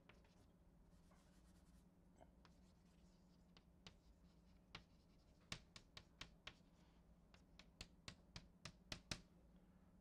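Faint chalk on a blackboard: soft tapping and scratching as words are written, ending in a quick run of short taps.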